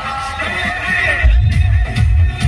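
Loud electronic dance music from a DJ truck's sound system. The bass kick drops out for about a second while a high, wavering sound plays, then the thumping beat comes back in.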